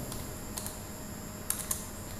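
A computer keyboard being typed on slowly: a handful of separate keystrokes, spaced unevenly, with a pair close together about half a second in and another pair near the end.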